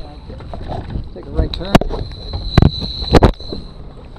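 Three sharp knocks in the second half over a steady low rumble and wind on the microphone aboard a dive boat, with faint voices.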